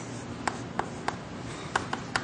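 Chalk striking a blackboard as short straight strokes are drawn: about five quick, sharp taps.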